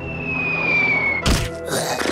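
Cartoon music score with a high whistle-like tone that slides slowly downward for about a second, cut off by a single thunk about 1.3 s in.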